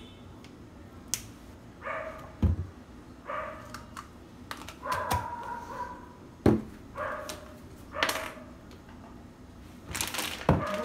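A dog barking in the background about five times, every second or two, with a couple of dull knocks in between.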